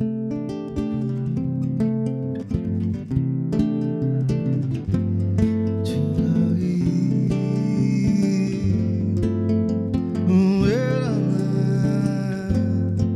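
Two acoustic guitars playing together, plucked notes and chords, as the instrumental introduction to a song.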